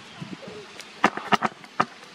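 Camera being fitted onto a tripod: three sharp clicks about a second in, unevenly spaced, with faint outdoor background between them.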